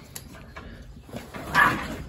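A short, harsh animal call about one and a half seconds in.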